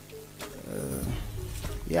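Brief lull in conversation: a faint, low voice, a short click about half a second in, then speech starting up again near the end.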